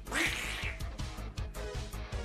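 A single raspy duck quack sound effect right at the start, over outro music with a steady beat.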